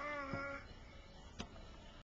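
A toddler's voice holding one drawn-out note that falls slightly in pitch and stops about half a second in. A single sharp click follows near the end.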